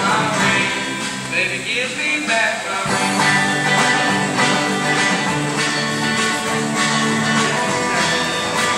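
A live band of several electric guitars and an acoustic guitar playing a song through stage amplifiers, loud and continuous.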